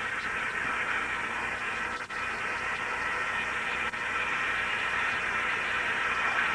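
Bathroom sink faucet running steadily, the water splashing into the basin and over wet hair as it is rinsed, with two brief dropouts.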